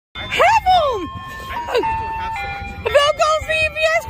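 A high voice exclaiming with rising and falling pitch, then talking in a sing-song way, over a simple chime-like melody of steady notes that step downward.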